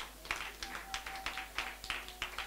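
Faint, scattered clapping from a congregation, with a soft held musical note underneath.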